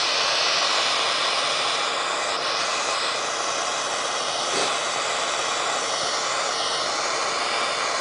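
Handheld propane torch burning with a steady hiss, its blue flame played over a lump of snow.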